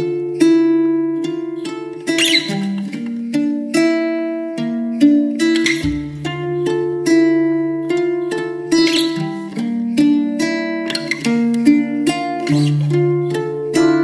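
Instrumental opening of a song: guitar notes plucked one after another with chords ringing under them, no singing.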